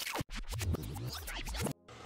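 Music with a record-scratch effect: quick back-and-forth sweeps in pitch that cut off abruptly near the end.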